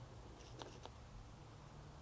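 Near silence, broken by two or three faint short spritzes from a hand trigger spray bottle of soapy water about half a second to a second in.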